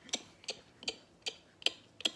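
A regular series of sharp clicks or taps, five of them evenly spaced at about two and a half a second.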